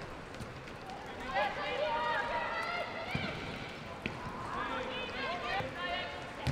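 Footballers shouting short calls to each other on the pitch, with a couple of sharp thuds of the ball being kicked.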